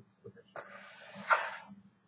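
The felt nib of a broad-tipped marker dragging across paper as a long curved calligraphy stroke is drawn: a scratchy hiss starting about half a second in, lasting a little over a second and swelling just before it stops.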